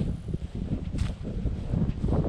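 Wind buffeting the phone's microphone as a low, uneven rumble, with a short sharp click about a second in.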